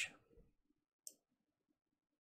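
Near silence: room tone with a single faint, short click about a second in.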